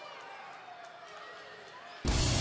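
Arena crowd noise with scattered faint voices shouting from the audience.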